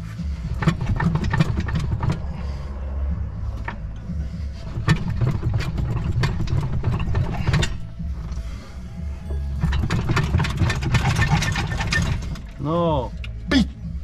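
Scattered metallic clicks and knocks as a Škoda engine and gearbox are pushed and rocked onto their locating dowel pins, over steady background music with a heavy bass. A man's strained vocal sound comes near the end.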